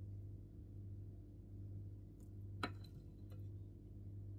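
Faint steady low hum, with a single light clink about two and a half seconds in and a couple of fainter ticks around it, as a small metal cup touches a metal muffin tin while batter is poured.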